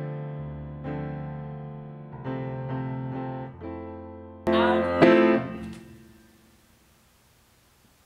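Grand piano played slowly in sustained chords, a few struck over the first four seconds, then a louder final chord about four and a half seconds in that rings out and fades away.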